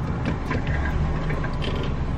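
Car engine idling, heard from inside the cabin as a steady low rumble, with a few faint clicks and rustles.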